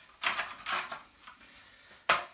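Two short handling noises in the first second, parts of a steel-and-plastic appliance stand being picked up and moved. It goes quiet after that.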